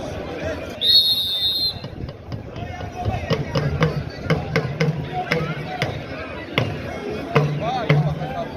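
A shrill whistle blast about a second in, lasting about a second. Then drumming with even strikes about three a second, under voices from the crowd.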